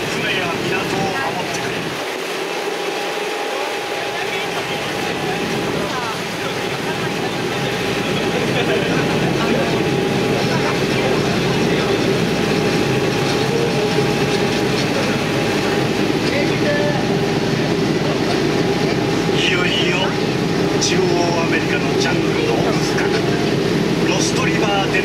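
Transit Steamer Line tour boat under way: a steady engine hum with water wash, the low rumble growing louder about six seconds in.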